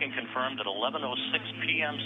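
Speech over a space-to-ground radio link, thin and telephone-like, with a steady low hum beneath it.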